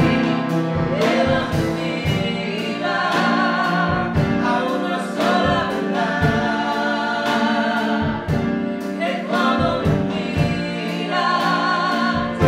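A woman singing a Christian worship song with vibrato, over instrumental accompaniment with a steady beat.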